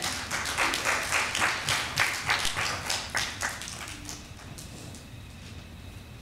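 Congregation applauding: a short round of clapping that thins out and stops after about four seconds.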